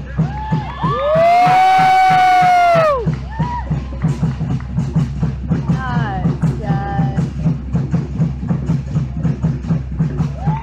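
Fast, steady drumming at about three beats a second. About a second in, a loud drawn-out yell rises, holds for about two seconds and falls away; shorter shouts follow near the middle.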